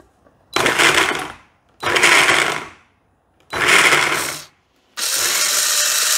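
Countertop blender grinding sliced carrots in sunflower oil, pulsed in three short bursts of about a second each and then run steadily for nearly two seconds.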